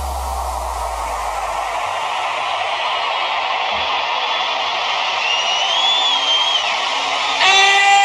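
Tech house mix in a breakdown with no kick: a low bass note fades out over the first two seconds while a noise sweep slowly swells. A short synth line glides up and back down in the middle, and a held pitched note with many overtones comes in near the end.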